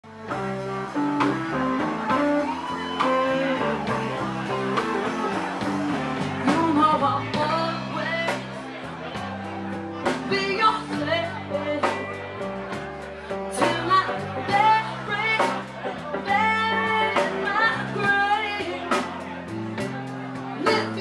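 Live band playing: vocals over electric guitar, bass guitar and a drum kit, with a steady beat. The singing comes in about six seconds in.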